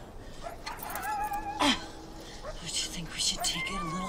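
A woman's close, high-pitched whimpering and murmuring vocal sounds with sharp breaths, and a few spoken words near the end.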